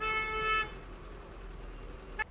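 A vehicle horn gives one short, steady toot lasting about two-thirds of a second, then only faint low street noise.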